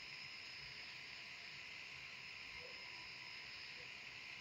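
Faint steady hiss with a faint thin hum-like tone underneath; no distinct events.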